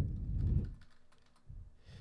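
A few light computer-keyboard key taps as measurements are typed into a field.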